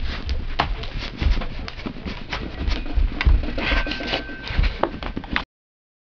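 Jumping rope: uneven low thumps of feet landing and sharp clicks of the rope striking the floor, cutting off abruptly near the end.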